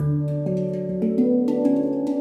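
Svaraa stainless-steel handpan tuned to D Raga Desya Todi (F# Aeolian hexatonic), played with the fingers. The low central ding note sounds at the start, then a quick run of notes climbs up the scale, each one ringing on under the next.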